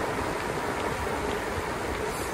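Steady rush of wind on the microphone and tyre noise on asphalt from an e-bike coasting fast downhill.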